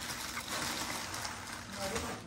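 Plastic bag wrapping on a gift rustling and crinkling as it is pulled open by hand.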